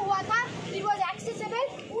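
A woman speaking in a high-pitched voice, her speech running on without a break.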